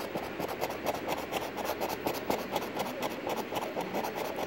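A coin scraping the scratch-off coating from a paper lottery ticket in rapid short strokes, several a second.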